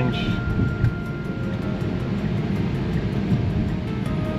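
Steady road and tyre noise heard inside the cabin of a moving Tesla electric car, with a faint, thin steady tone for about the first two seconds.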